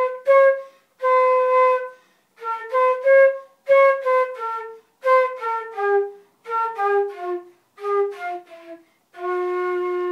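Solo concert flute playing a melody in short phrases separated by breath pauses. The phrases step downward in the second half and end on one long held low note near the end.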